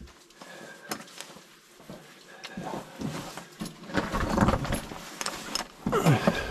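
Handling and movement noise from a person settling a camera on a tripod and shifting over a rubbly lava-tube floor: a couple of sharp clicks, then scraping and rustling that grows louder toward the end.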